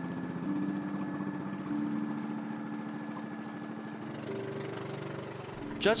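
Engine of a wooden outrigger boat running steadily while the boat is under way.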